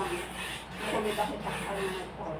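Scraping and rubbing of spoons and forks on plates during a meal, in short repeated strokes, with faint voices underneath.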